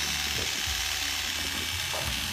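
Corded electric hair clippers buzzing steadily as they cut through a child's hair close to the head.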